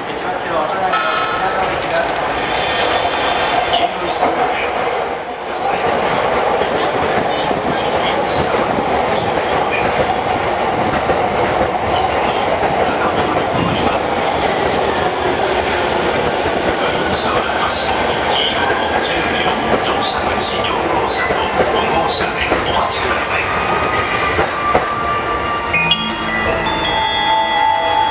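E231 series electric commuter train arriving at a station, its cars running past close by with the steady sound of wheels on the rails.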